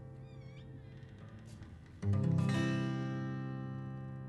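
Acoustic guitar: a chord rings and fades, then a new chord is strummed about two seconds in and left to ring out. A brief wavering high squeak sounds early on.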